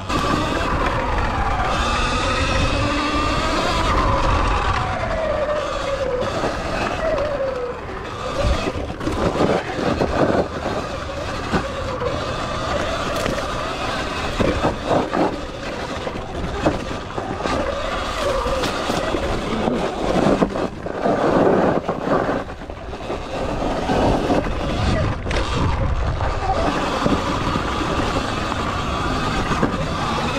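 Sur Ron electric dirt bike's motor whining, its pitch rising and falling with speed, over a steady low rumble. There are scattered knocks and rattles, loudest around the middle and again after twenty seconds.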